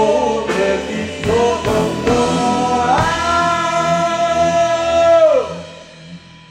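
Live progressive rock band with singing playing the closing bars of a song: a few drum hits, then a held final chord that bends down in pitch and stops about five seconds in.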